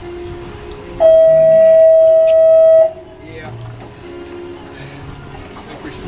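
Drag of a large spinning reel buzzing as a king fish pulls line off it: one loud, steady, high buzz lasting about two seconds, starting about a second in.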